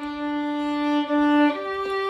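Solo violin played with the bow: a long held note, then a change to a higher held note about one and a half seconds in.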